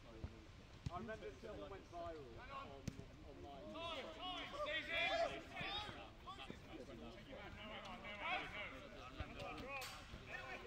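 Footballers shouting and calling to each other during play, loudest about five seconds in. A few sharp thuds of a football being kicked come in between.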